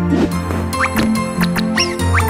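Children's cartoon background music with steady held notes, overlaid by several quick whistle-like sound effects that slide up and down in pitch, with a few light clicks, as toy go-kart parts snap together.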